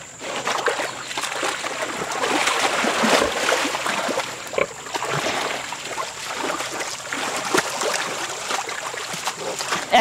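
Mangalitsa–Berkshire cross pigs shifting and rolling in a wet mud wallow: wet mud splashing and squelching in irregular short slaps.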